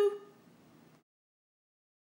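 The end of a spoken word fades into faint room hiss, and about a second in the sound track drops out to complete silence.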